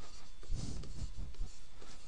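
A pen stylus writing on a tablet surface: faint scratching of the tip, with a few soft taps as letters are formed.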